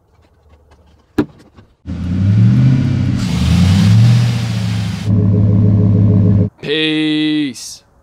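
GM Vortec truck engine running with a fitted dry-flow air filter: the revs rise and fall twice with a loud intake rush as they climb, then settle to a steady run that cuts off suddenly. A single sharp click comes about a second before the engine is heard.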